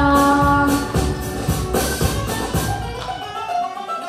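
A children's song performed to a backing track: a girl holds a sung note for about the first second, then the instrumental backing plays on alone with a regular beat. The low drums and bass drop out near the end.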